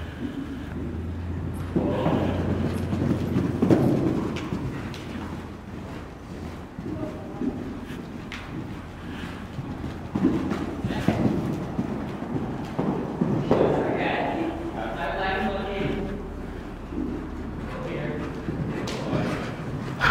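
A horse's hoofbeats on the soft dirt footing of an indoor arena as it canters, with indistinct talk at times, clearest about fourteen seconds in.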